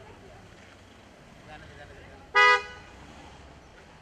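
Car horn giving one short, loud toot a little past halfway, over a low steady rumble of street traffic.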